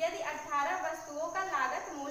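A woman speaking, with a steady high-pitched whine underneath.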